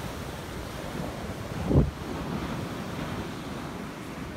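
Surf washing on a beach with wind buffeting the microphone, and one short, loud low thump a little under halfway through.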